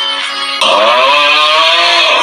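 Soft background tones, then about half a second in a sudden, much louder, harsh and distorted meme sound effect with a wavering pitch cuts in.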